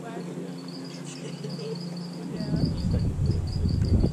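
A steady run of short, high, repeated chirps, typical of insects, over a low steady hum. About two seconds in, a loud low rumble comes in and covers the hum.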